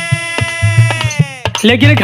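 A Birha folk singer's voice holding a long high note that slides down and breaks off about a second and a half in, over hand-drum beats and sharp clicking percussion. A new sung line starts near the end.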